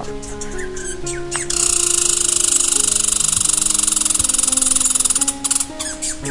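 Squirrel chattering in a rapid, buzzing rattle that starts about a second and a half in and stops sharply near the end, over background music of steady held notes.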